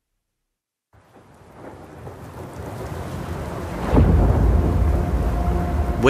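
Cinematic thunder-and-rain sound design: after a second of silence, a rumble with a rain-like hiss swells up, breaks into a heavy low thunder hit about four seconds in, and carries on as a loud, deep rumble.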